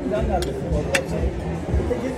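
Restaurant dining-room background of voices and music, with two short clinks of metal cutlery on a ceramic plate about half a second and a second in.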